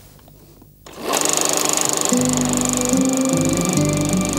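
A film projector starts up about a second in and runs with a fast, even clatter and a high whine. Guitar music comes in about a second later over it.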